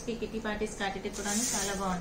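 A woman talking, with a short hiss about a second and a half in.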